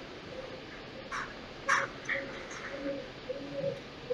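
Birds calling, picked up faintly through a video-call microphone: two short, harsh calls a little over a second in, then low, repeated cooing notes through the second half.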